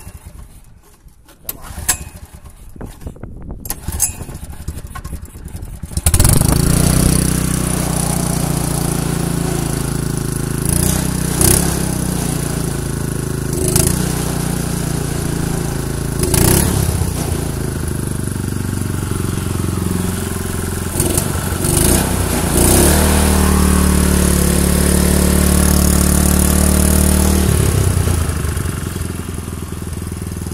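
Honda GX140 four-stroke single-cylinder engine on a snowblower being pull-started by its recoil cord. It catches about six seconds in and then runs steadily, with a few brief surges. It is running with the piston's oil control ring removed.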